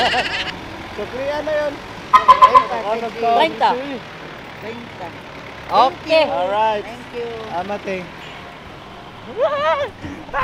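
People talking in short bursts over steady city street traffic. A short run of sharp clicks comes about two seconds in and is the loudest moment.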